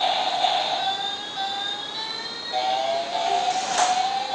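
Battery-powered toy play panel on a baby walker playing a steady electronic tune of high beeping tones that shifts pattern a couple of times. A sharp click comes near the end.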